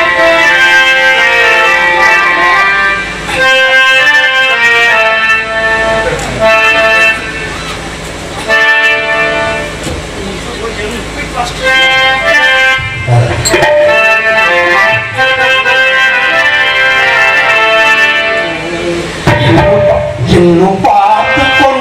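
Live Tamil stage-drama accompaniment: a harmonium plays a melody of held reedy notes in short phrases, with a few hand-drum strokes.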